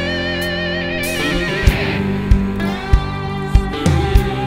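Blues-rock band instrumental: an electric guitar lead holds a long note with wide vibrato, and about a second and a half in the drums come back in with a steady beat under the band.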